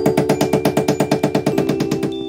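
Background music: a fast, even pulse of short notes, about eight a second, over held chords.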